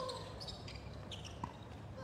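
A tennis player's grunt, falling in pitch, fades out just after a racket strike, then a faint knock of the tennis ball about one and a half seconds in.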